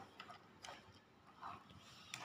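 Near silence, with a few faint clicks of plastic toys being handled.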